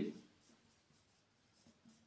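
Marker pen writing on a board: faint, short scratching strokes.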